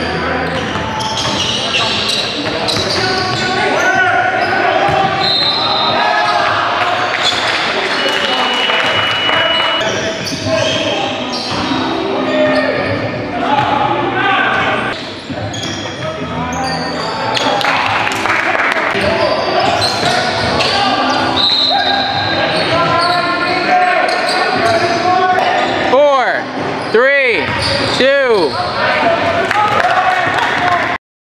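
Live sound of an indoor basketball game echoing in a large gym: a ball bouncing on the hardwood court and players' indistinct voices calling out. A high steady whistle blast of about two seconds comes about a third of the way in, and sneakers squeal on the court a few times near the end.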